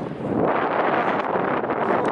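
Steady rushing noise of air and flight, an even hiss with no clear tones or knocks.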